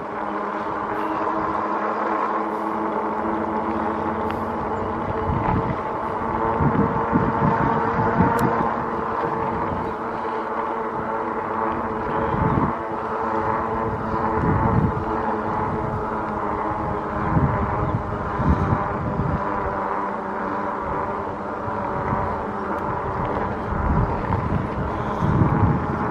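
Electric bike hub motor whining at a steady pitch as the bike cruises on pavement, with gusts of wind buffeting the microphone every few seconds.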